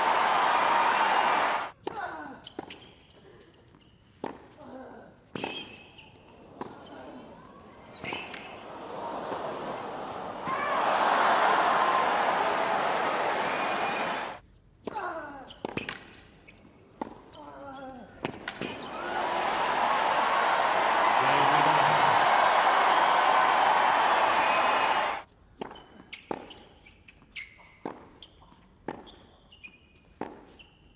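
Tennis on a hard court: the crowd cheering and applauding in three loud spells, each cut off suddenly. Between them, in the quieter stretches, tennis balls are struck by racquets and bounced on the court.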